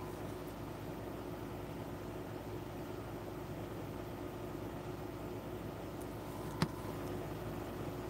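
Steady low background hum with faint constant tones, and a single sharp click about six and a half seconds in.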